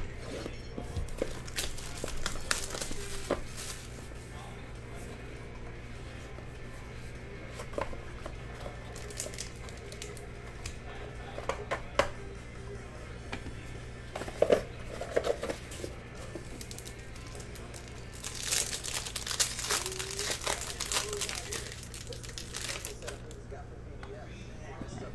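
Shrink wrap on a sealed trading-card box being slit and peeled off, crinkling, followed by the cardboard box and its insert being opened and handled. A denser run of plastic crinkling comes near the end.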